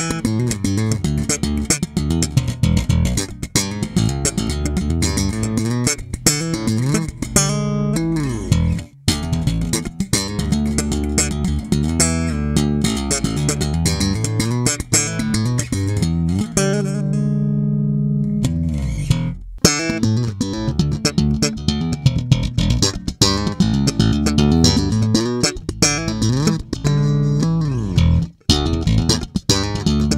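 Sterling by Music Man Ray4 electric bass played slap style through its stock humbucking pickup, with the onboard preamp set to a mid scoop (mids cut, bass and treble boosted). A busy line of sharply attacked notes, broken by a few brief pauses.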